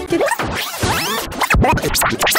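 Record-scratch-style sound: rapid pitch sweeps back and forth in quick succession over music.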